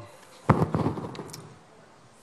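A sudden burst of crackling knocks about half a second in, dying away within a second.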